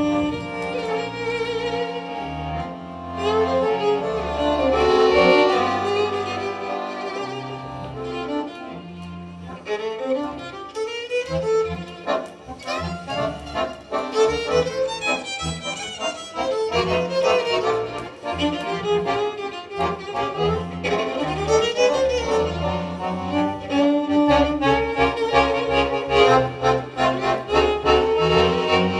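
Violin and piano accordion playing a duet. The violin's melody runs over a steady, repeating beat of low bass notes from the accordion.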